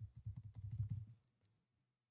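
Faint computer keyboard typing: a quick run of key taps for about a second, picked up mostly as dull thuds, then it stops.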